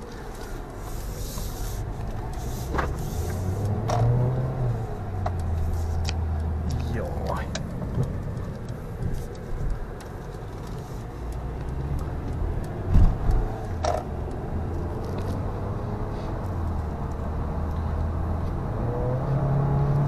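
Inside a Mercedes-Benz car on the move: a steady engine and road hum whose pitch rises and drops several times as it picks up speed. A few sharp clicks sound over it, the loudest about 14 seconds in.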